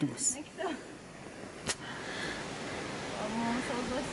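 Faint voices against a quiet outdoor background: brief soft speech at the start and again near the end. There is one sharp click a little under halfway through, and an even, steady hiss from about halfway on.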